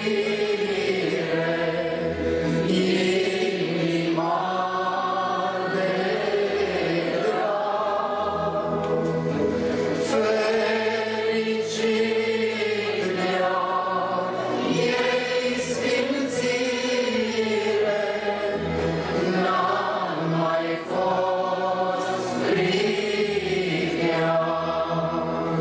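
A group of voices singing a slow Christian hymn together, in long held phrases of a few seconds each.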